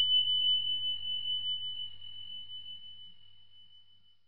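A notification-bell chime sound effect: a single high, pure bell tone ringing out and fading slowly with a slight waver, dying away near the end.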